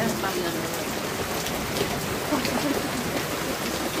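Steady rain falling, an even hiss that holds level throughout, with faint voices in the background.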